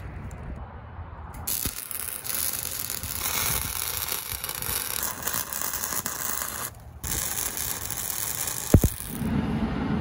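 Wire-feed (MIG) welding arc crackling and hissing steadily as steel tube is welded onto the log splitter beam; it starts abruptly about a second and a half in, breaks off for a moment just before seven seconds, then runs again until shortly before the end.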